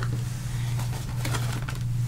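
A steady low hum with faint, scattered light ticks and rustles above it: background room noise while hands move on the craft table.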